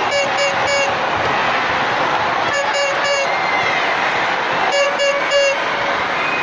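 A horn in an arena crowd sounding three groups of three short blasts, each group about two seconds after the last, over steady crowd noise.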